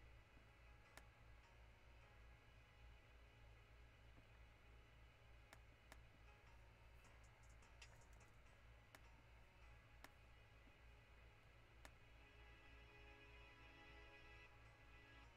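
Near silence: a low steady hum with several scattered computer-mouse clicks, a few of them bunched together about halfway through.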